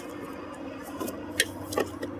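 Noise-filtered highway traffic in the background, leaving an odd warbling residue, with a few light clicks and knocks in the second half.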